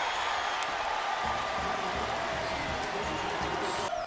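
Stadium crowd noise after a touchdown, a steady wash of voices, with low music coming in underneath about a second in.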